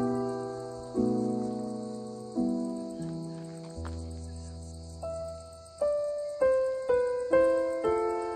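Piano music, mostly single notes and chords that ring out and fade. The notes come slowly at first and quicken in the second half. Under it runs a steady high chirring of insects.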